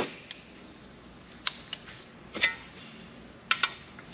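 About half a dozen separate sharp metallic clicks and clinks, the loudest about two and a half seconds in: pliers gripping and working a stubborn screw in a small aluminium part.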